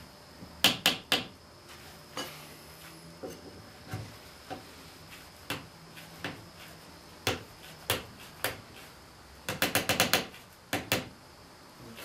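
Sharp wooden clicks and knocks as loose split-wood spindles are handled, twisted and rocked in their holes in a chair seat. They come singly at first, then as a quick run of about eight knocks near the end.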